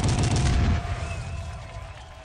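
A heavy bass hit with a fast rattling crackle, blasted through a large festival PA. It stays loud until just under a second in, then dies away.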